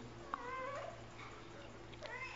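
A faint, short, high-pitched wavering call about half a second in, and another starting near the end, over a steady low background hum.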